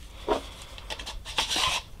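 End cap of a Secur emergency flashlight/power bank being screwed back onto the threaded body by hand: a few short scratchy rubs of the threads and handling, mostly in the second half.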